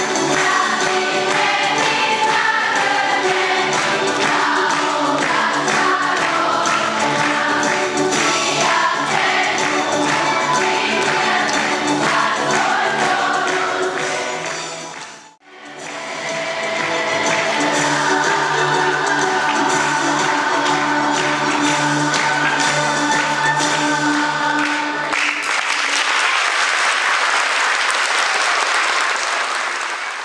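A school choir singing, breaking off for a moment about halfway through. About 25 seconds in the singing ends and the audience applauds.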